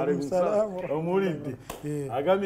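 A man's voice talking, thin and cut off above the middle range as over a phone line, with a single sharp click near the end.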